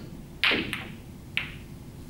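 Snooker balls clicking against each other on the table: a loud click about half a second in, a faint one just after, and another sharp click about a second and a half in.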